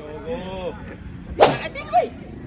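A single sharp smack about one and a half seconds in, with a fainter click just before the end; faint voices in the background.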